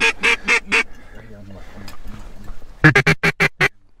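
A duck call blown close by as a series of raspy quacks. There are four at the start, then a faster run of about seven near the end.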